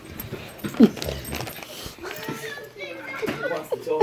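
Dogs tussling over a cloth Christmas stocking, with short dog vocalizations; the loudest, sharp one comes about a second in.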